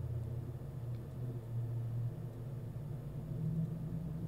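A low, steady hum with no speech, its tone shifting slightly about a second in.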